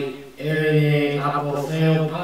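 A man's voice speaking Greek in a level, chant-like monotone with long held syllables and a short pause early on. It is the Pauline greeting of grace and peace from God the Father and the Lord Jesus Christ.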